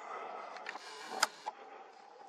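Handling noise on a compact digital camera being re-aimed: a soft rustle, then a sharp click a little over a second in, with smaller clicks around it, over a faint steady tone.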